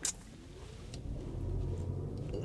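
Car pulling away from a stop and accelerating, heard from inside the cabin: a sharp click at the start, then a tone rising in pitch and a low rumble that grows louder about a second in.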